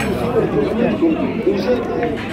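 Several men talking over one another: indistinct conversational chatter with no single clear voice.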